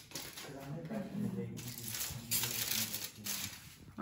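Aluminium foil crinkling and rustling as a cake sitting on it is handled, with quiet talk underneath.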